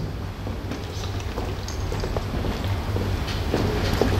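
Steady low hum and room noise of a large hall's sound system, with a few faint footsteps on the stage boards.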